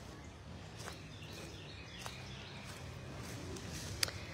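Faint outdoor ambience: a low steady hum with a few distant bird chirps and a couple of soft clicks.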